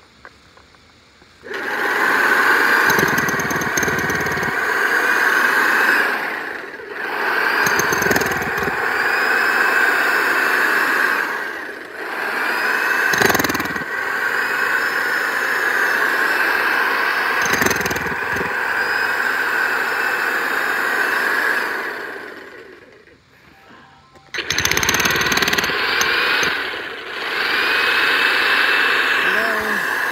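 DeWalt electric jackhammer hammering its chisel bit into loose soil, running loud and steady in long runs. It starts about a second and a half in, dips briefly a few times, stops for about two seconds near the end, then starts again.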